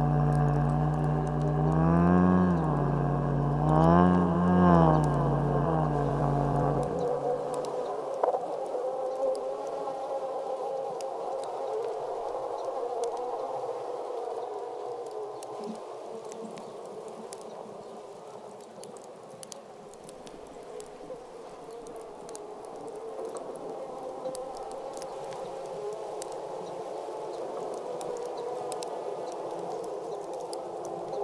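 Ambient soundtrack drone: a deep, many-layered tone bends up and down in pitch twice and cuts off about seven seconds in. A steady buzzing hum with faint crackles follows.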